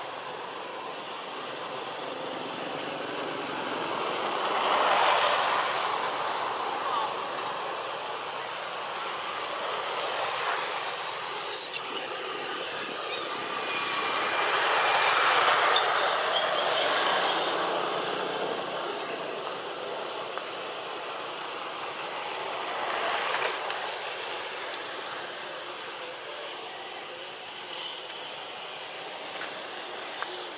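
Outdoor background noise that swells and fades several times, like something passing at a distance, with a few short, high, falling squeaks in the middle.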